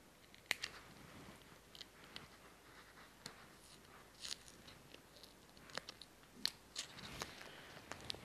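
Faint, scattered clicks and crinkles, about ten in all, of a nail form being worked loose and pulled off a freshly sculpted acrylic nail.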